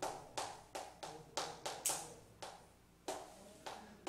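Chalk writing on a chalkboard: a quick series of sharp taps and short scrapes as each stroke of a word is written, with a brief lull about three quarters of the way through.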